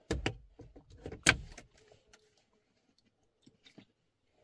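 A quick cluster of sharp knocks and clicks, two in the first moment and the loudest about a second in, followed by a couple of faint ticks near the end.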